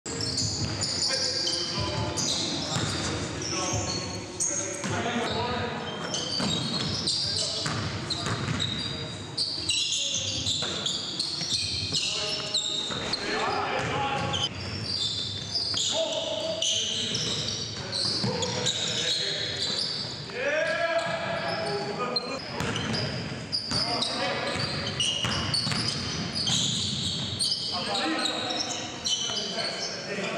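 Live pickup-style basketball game in a gym: the ball bounces on the hardwood court, sneakers squeak in short high chirps, and players' voices call out now and then.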